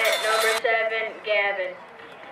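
Raised, high-pitched voices shouting in several drawn-out calls. They die away near the end. A sudden drop in background hiss about half a second in marks a cut in the footage.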